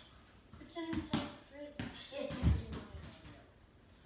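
A baseball thudding and bouncing on the floor, a handful of knocks with the heaviest about two and a half seconds in, mixed with a boy's short vocal sounds.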